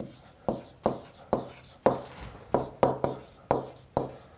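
Stylus writing on a tablet: about ten short, sharp taps and scrapes as letters are written, over a faint steady hum.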